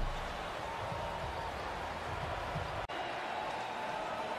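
Basketball arena ambience between plays: a steady low background hum with faint indistinct murmur. The sound drops out sharply for a moment a little under three seconds in, as the broadcast cuts to another play.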